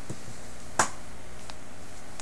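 A sharp plastic click a little under a second in, with a soft thud before it and a fainter tick after: small clear plastic deco jars being set down on a table.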